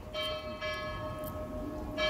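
Bell-like chime tones from the show's soundtrack over the theatre sound system, struck twice about half a second apart and left ringing.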